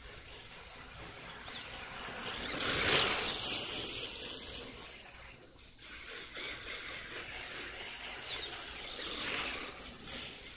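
RC drift car driving and sliding on asphalt: a hiss of tyres scrubbing across the rough surface with a faint motor whine that rises and falls. It is loudest about three seconds in, dips briefly past the halfway point, then builds again.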